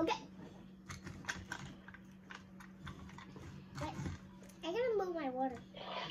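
A string of small, sharp clicks and taps from things being handled on a table, over a steady low hum, then a short voice sliding up and down in pitch about five seconds in.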